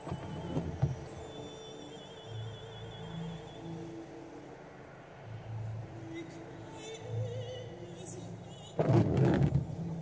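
A home recording of a person singing in the bath, played back: slow, held notes with vibrato, louder for a moment near the end.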